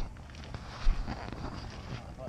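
Wind rumbling on the microphone of a handheld camera, with a single sharp low thump about a second in.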